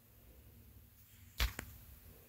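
Two sharp knocks about a second and a half in, the second fainter and following a fifth of a second after the first, over faint room tone.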